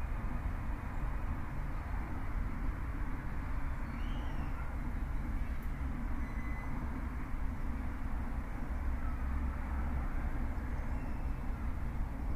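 Steady low background rumble with a soft hiss, level and unbroken throughout.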